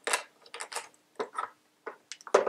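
A handful of small, sharp clicks and rattles, plastic and metal, as the batteries are popped out of the open battery compartment of an HT4006 current clamp.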